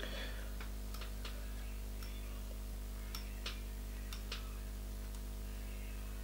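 Faint, irregular light ticks as a strand of pearl Mylar tinsel is handled and wound onto a fly hook held in a vice, over a steady low hum.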